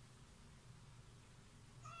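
Near silence, then a domestic cat's meow begins near the end, with a falling pitch.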